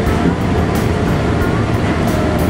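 Running noise inside a moving light railway car: a steady rumble and hiss, with a faint whine.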